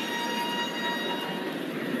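Indoor arena crowd noise with a horn tone that slides up and then holds steady for about a second and a half before fading.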